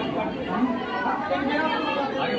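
Indistinct chatter: several voices talking over one another, with no single clear speaker.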